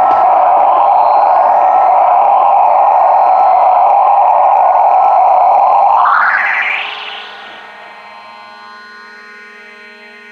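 Analog synthesizer drone through effects: a loud, noisy, distorted wash that sweeps upward in pitch about six seconds in and falls away, leaving a quieter, steady buzzing tone with many overtones as the jam winds down.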